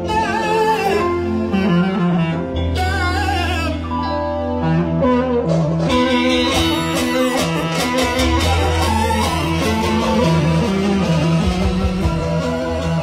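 Live kocek band music: an ornamented clarinet-led melody over a sustained bass line, with a drum beat coming in about halfway through.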